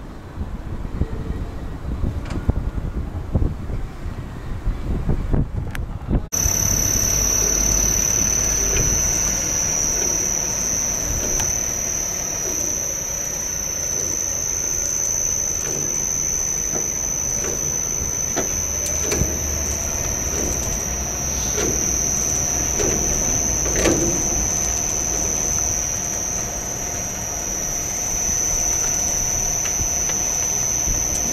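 Wind buffeting the microphone, with scattered clicks. About six seconds in, this gives way abruptly to a steady high-pitched whine over a low rumble, with a few knocks later on.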